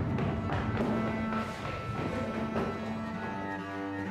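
Film score of low bowed strings, cello and double bass, holding sustained notes over a low drone.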